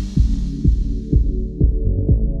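Background electronic music: a steady kick drum beating about twice a second over a low bass line, with the brighter upper sounds fading out over the first second and a half.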